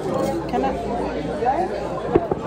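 Indistinct chatter: several voices talking over one another, with no clear words.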